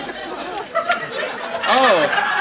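Studio audience chattering and laughing, with one voice calling out near the end in a pitch that rises and then falls.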